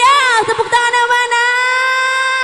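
A woman's amplified singing voice on one long held note, swooping into it at the start and then holding it steady with little or no accompaniment: the closing note of her song.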